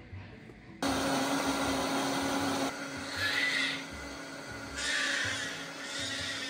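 Countertop blender switched on, starting abruptly about a second in and running steadily with a motor hum as it blends a protein shake.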